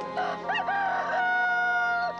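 A rooster crowing once: one long call that rises in pitch about half a second in and is then held until near the end. It sounds over soft background music.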